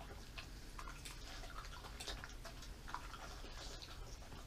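Dog eating from a ceramic plate: faint, irregular small clicks and smacks of mouth and teeth on the food and plate, over a low steady hum.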